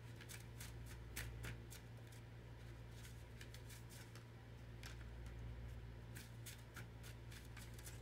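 Tarot cards being shuffled by hand: a faint run of quick, irregular riffling clicks, over a steady low hum.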